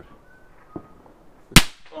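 A single loud, sharp crack about one and a half seconds in.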